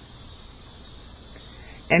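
Cicadas calling in the background as a steady, high-pitched drone.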